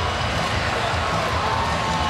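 Steady crowd noise from a hockey arena's spectators, an even wash of many voices.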